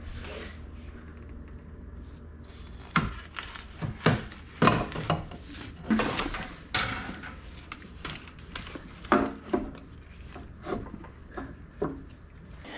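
Hard parts being handled during engine assembly: after a few seconds of low hum, a run of irregular knocks, clunks and scraping.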